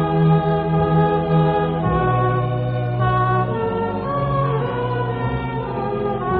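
A slow hymn sung by a choir with organ, in held chords that change about once a second.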